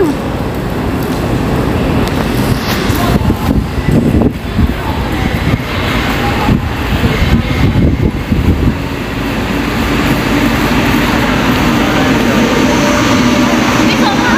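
Steady, loud background hubbub of a busy train station concourse: a low rumble with indistinct voices mixed in.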